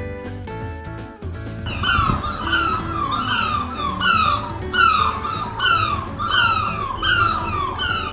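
Background guitar music, with a run of short, high, downward-sliding cries laid over it from about two seconds in, repeating about every half to two-thirds of a second.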